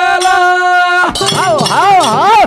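A man singing a Banjara bhajan holds one long, steady note that breaks off about a second in, then sings on with quick sweeping ornaments in pitch. Bright metallic clinking of small brass hand percussion rings along with the singing.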